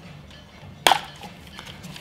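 A single sharp plastic click a little under a second in: the front section of a Blitz C20 pricing gun unlatching as it is pulled open by its two tabs to expose the ink roller.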